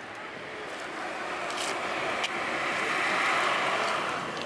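A car driving past on the road, its engine and tyre noise swelling to loudest about three seconds in and then easing off.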